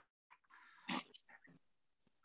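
A single faint, brief call from a pet, about a second in, heard over a videoconference microphone against near silence.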